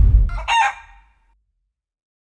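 A brief rooster crow, about half a second long, arrives about half a second in as the low tail of an intro music sting dies away.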